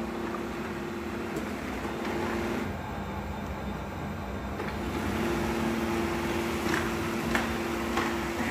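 Shark robot vacuum running across a tile floor: a steady motor hum with two held low tones. The higher hiss drops away for about two seconds in the middle, then returns.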